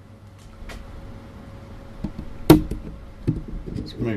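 Camera handling noise: a few faint clicks, then one sharp knock about two and a half seconds in, followed by a few lighter knocks.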